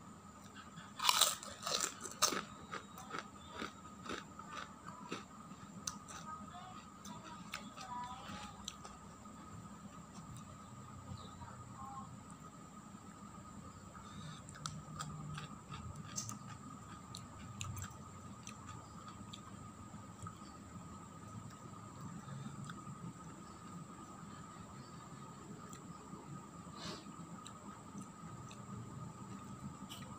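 Close-up eating sounds of fried kerupuk crackers: a few loud crunches as a cracker is bitten about a second in, then a run of smaller crackling chews that fade over the next several seconds, followed by quieter chewing with an occasional sharp crunch.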